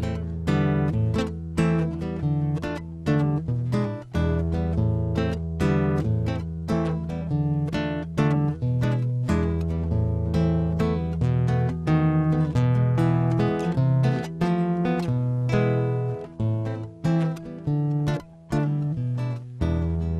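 Nylon-string classical guitar playing an instrumental interlude: a quick run of plucked notes over held bass notes.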